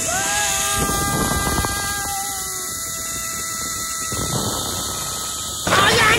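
Zipline trolley pulleys running along the steel cable: a whine of several steady tones that starts with a short rise and fades away over two to three seconds, over a rush of wind noise. Near the end a louder, busier sound cuts in suddenly.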